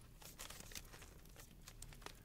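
Near silence with faint, scattered crackles.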